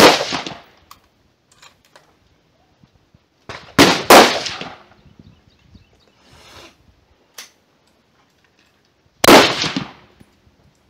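Rifle shots from the firing line: one sharp report at the start, a quick cluster of three about four seconds in, and another near the end, each trailing off in an echo.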